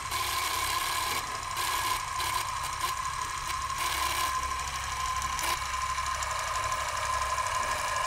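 Film projector sound effect: a steady mechanical whir and clatter with a constant high hum running under it.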